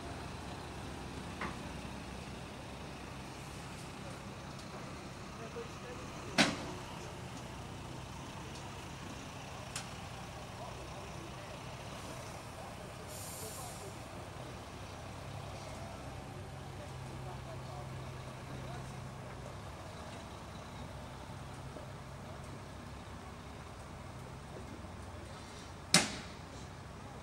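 Heavy lorry engines running with a steady low hum in slow street traffic. A sharp click comes about six seconds in, and a short hiss of air from an air brake about thirteen seconds in.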